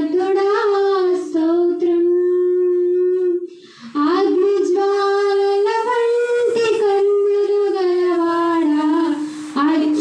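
A woman singing a slow worship song into a microphone, holding long notes that rise and fall in pitch, with a brief break for breath about three and a half seconds in.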